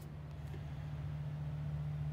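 A steady low hum, one unchanging tone with faint noise beneath it.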